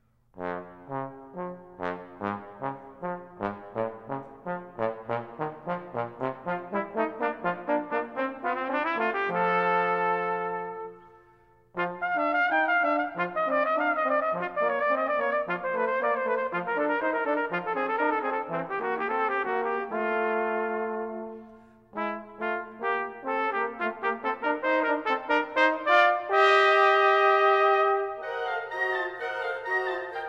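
Cornet and trombone playing a virtuoso duet with band. A string of short detached notes builds over the first nine seconds to a held note, then come fast runs, with brief breaks about twelve and twenty-one seconds in and a high held chord near the end.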